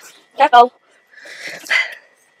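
Two short, loud yelps in quick succession, followed by a breathy hiss.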